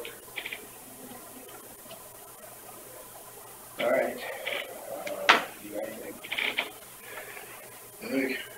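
Indistinct, low talk in a small room, starting a little before halfway, with one sharp click shortly after the talk begins.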